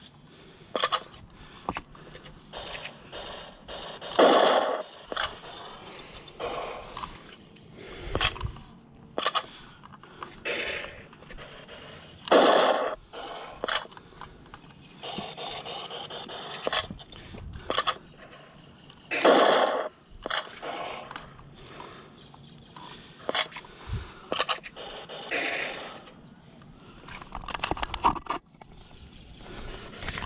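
Irregular bursts of scraping and rustling, the three loudest about 4, 12 and 19 seconds in, with scattered small clicks between: a body-worn camera and gear brushing against rock and dry brush as the player shifts position.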